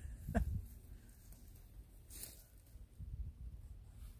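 A woman's short laugh just after the start, then quiet with a low rumble underneath and a brief rustle about two seconds in.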